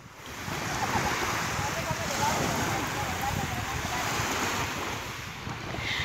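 Small waves washing onto a pebbly shore, with wind rushing over the microphone; faint voices carry from farther out on the water.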